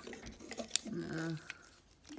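Small clicks from the hard plastic parts of a Transformers action figure being moved and folded by hand, with one sharp click just under a second in. A brief voiced sound from the person follows it.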